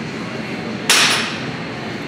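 A single sharp metal clank of gym weights about a second in, ringing briefly, over steady gym background noise.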